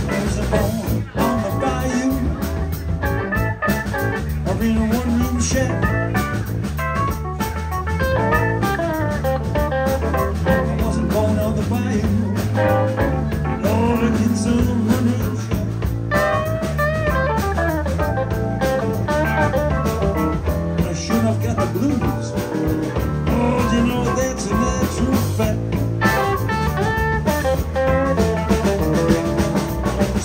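Live blues band playing an instrumental passage: electric guitar lines over bass guitar, drum kit and keyboard.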